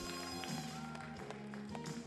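Quiet background music of held, sustained notes.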